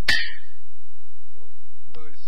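A single metallic clang from the opera's percussion band, struck once at the start and ringing out for about half a second.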